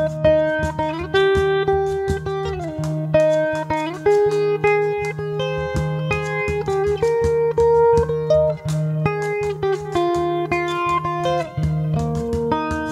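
Instrumental intro on a capoed guitar: a picked melody with slides between notes over a held low bass note, with light, even finger taps on a frame drum.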